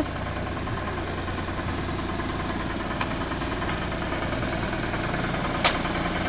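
Engine of a small police parking-enforcement cart idling steadily with a low hum.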